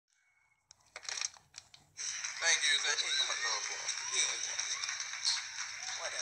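A boy talking indistinctly over a steady high hiss, after a few clicks in the first two seconds.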